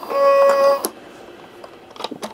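Children's electronic toy piano sounding a single steady note for just under a second, cut off by a click.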